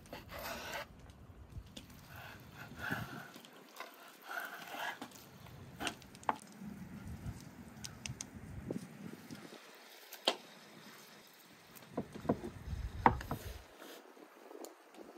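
A kitchen knife slicing through raw lamb lung on a wooden cutting board, three drawn-out cutting strokes in the first five seconds. Later come scattered sharp knocks and clinks of utensils and pots set down on a wooden table, the loudest near the end.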